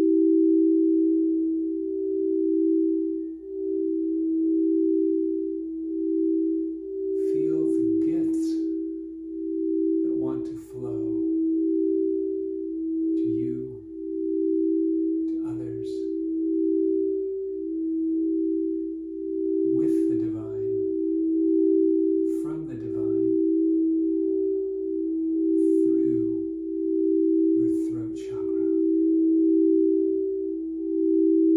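Two quartz crystal singing bowls tuned to 432 Hz, played with mallets, sustaining two steady pure tones close in pitch that pulse slowly against each other. Brief soft noises come every few seconds over the tones.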